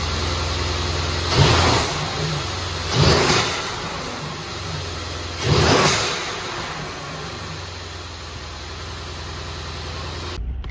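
Mercedes-AMG C63's M177 twin-turbo V8, fitted with BMS cone-filter air intakes and heard with the hood open, idling and then blipped three times in the first six seconds, each rev carrying a rush of intake noise, before settling back to a steady idle.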